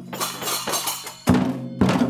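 A class's percussion being struck with sticks: hand drums, tambourines and a large Chinese drum, in uneven hits with two loud strikes in the second half.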